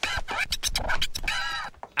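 Cartoon sound effect of a rapid, scratchy scramble as a character dashes off, with a few short pitched sweeps. It cuts off sharply near the end.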